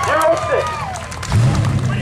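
Excited voices shouting and whooping for about the first second. Just past halfway a steady low engine hum starts.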